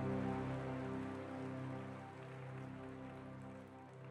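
Congregation applauding, dying away over the few seconds, over a sustained keyboard chord.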